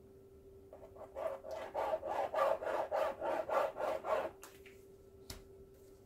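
Plastic squeeze bottle of acrylic paint squirting paint in quick back-and-forth zigzag strokes across a canvas: a run of short scratchy rubbing sounds, about four a second, that stops about four seconds in. A single sharp click follows about a second later.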